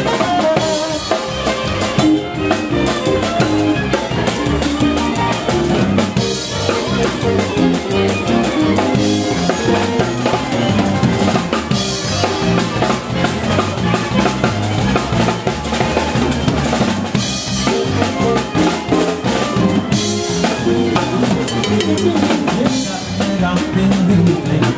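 A live band playing, with the drum kit to the fore: snare and bass drum keeping a steady beat over a bass line.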